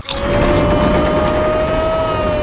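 A loud, steady held tone over a noisy rumble, rising slightly in pitch.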